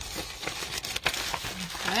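Clear plastic zipper bag crinkling and rustling in irregular crackles as hands work a folded sheet of black paper into it and flatten it.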